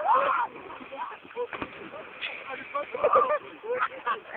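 Young men's voices shouting and calling out, the loudest shout at the start. Near the end comes water splashing as someone runs into the river.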